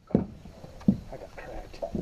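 Two dull thumps on a fishing boat, one at the start and one just under a second later, over the low rumble of the boat on the water.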